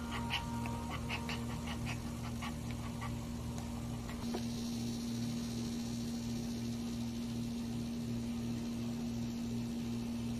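Maltese in labour whimpering in a string of short, high squeaks, a few a second, for the first three seconds or so, over a steady low hum. About four seconds in the squeaks stop, and only the hum and a faint high whine remain.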